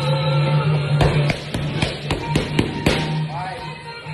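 Boxing gloves striking focus mitts in a quick flurry of about eight punches, over background music.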